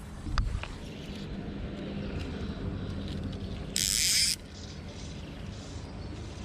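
A fly reel's click-pawl ratchet buzzing once for about half a second as line is pulled off the spool, with a few small clicks near the start. A steady low motor hum runs underneath.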